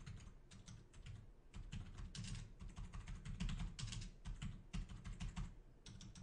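Computer keyboard typing: a faint, continuous run of quick, uneven keystrokes.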